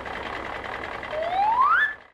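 Cartoon truck sound effect: a steady, noisy engine rumble, joined about a second in by a whistle that rises in pitch and grows louder before the sound cuts off.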